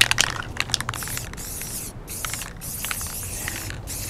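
Aerosol spray-paint can hissing in long sprays, broken by short pauses about halfway through and again near the end.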